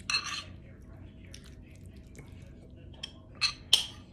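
Metal spoon scraping and clinking against a ceramic bowl while tuna salad is spooned out of it: a short scrape at the start and sharp clinks near the end.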